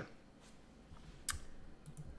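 A computer mouse click: one sharp click a little past a second in, with a fainter tick just before the end, against quiet room tone.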